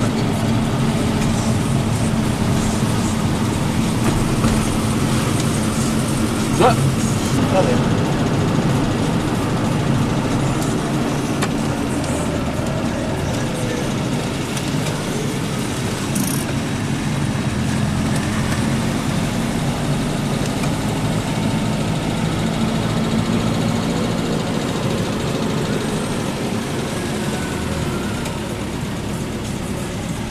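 Citroën 2CV's small air-cooled flat-twin engine running at a steady speed, with a continuous even drone. A brief sharp sound stands out a little after six seconds in.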